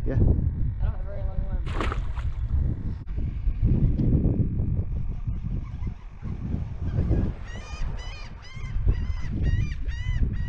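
Wind rumbling on the microphone on an open boat, and in the last few seconds a quick run of short, high bird calls, about three a second.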